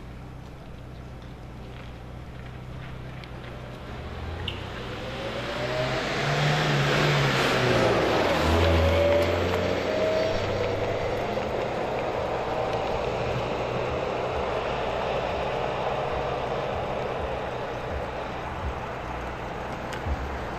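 A car drives past close by: engine and tyre noise builds over several seconds to a peak about a third of the way in, then fades slowly, with the engine note rising as it pulls away.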